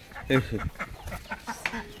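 A duck calling: one louder, falling quack about a third of a second in, then a run of short, softer quacks.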